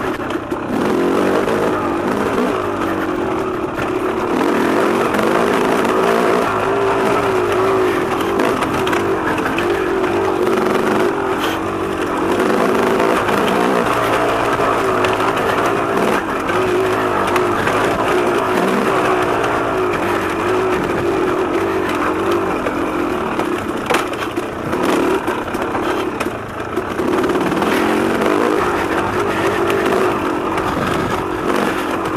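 Dirt bike engine running under load, its revs rising and falling continuously with the throttle, with a few sharp knocks from the bike over rough ground.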